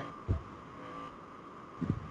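Quiet room tone with a faint steady hum and a single soft, low thump about a third of a second in.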